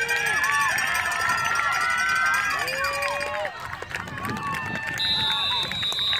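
Several voices yelling and cheering at once, some drawn out into long, held shouts. A steady high whistle sounds for about a second near the end.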